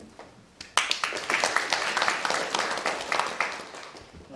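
Audience applauding: the clapping starts suddenly about a second in, stays loud, and fades away near the end.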